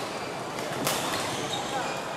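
Badminton racket striking a shuttlecock, one sharp crack a little under a second in, with a few fainter hits, over the steady chatter of a large sports hall.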